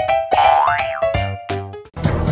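Playful background music of short, bouncy pitched notes. About half a second in, a cartoon-style sound effect slides up in pitch and back down. The music drops away just before the end.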